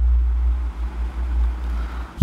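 Steady low hum with a faint hiss over it: the background noise of the recording.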